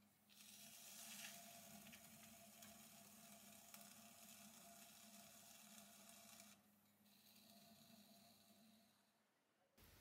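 Near silence: a faint hiss of a plastic card scraping the clay dome of a pot spinning on a potter's wheel, over a low steady hum. It drops away about six and a half seconds in and goes fully silent shortly before the end.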